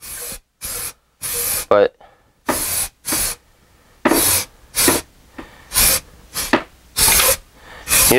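Aerosol can of dye-penetrant developer spraying in about a dozen short hissing bursts with pauses between, applying a coat over an engine block deck.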